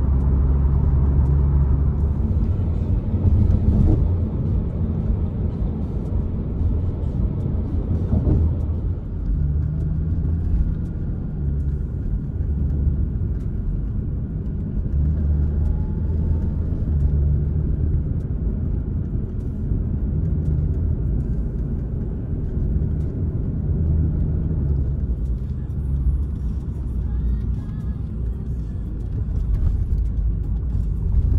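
Road and engine noise inside a moving car's cabin, with music playing over it; the music's bass notes change every second or two.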